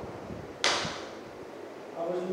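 A single sharp swish-slap about two-thirds of a second in, from a paperback textbook being flipped open in the hand, dying away quickly.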